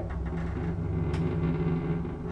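Schindler elevator car running with its doors shut: a steady low hum and rumble from the lift's drive, with a single click about a second in.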